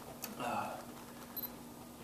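Quiet stage room tone with a steady electrical hum, a brief murmur of a voice about half a second in, and a couple of faint clicks.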